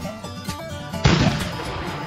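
A cannon shot, one sudden loud blast about a second in that dies away over about half a second, over picked acoustic guitar music.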